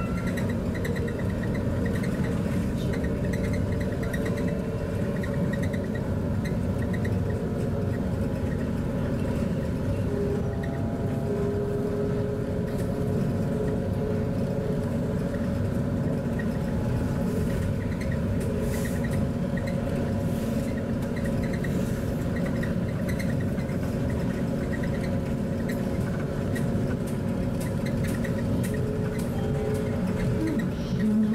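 Rubber-tyred Crystal Mover LRT train running along its concrete guideway, heard from inside the car: a steady low rumble of tyres and running gear with faint steady whining tones from the drive.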